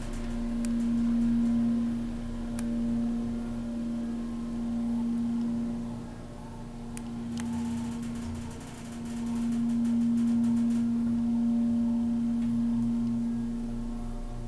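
Da-Sota hydraulic elevator travelling upward: a steady droning hum from its hydraulic pump unit, swelling and fading in loudness, with a few faint clicks.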